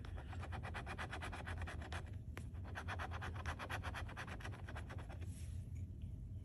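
Metal bottle opener scraping the coating off a scratch-off lottery ticket in rapid back-and-forth strokes, about ten a second. The scratching comes in two runs with a brief pause about two seconds in, and stops a little after five seconds in.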